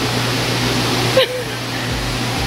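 Steady rushing background noise with a constant low hum, broken a little over a second in by a brief voice sound, after which the hiss eases slightly.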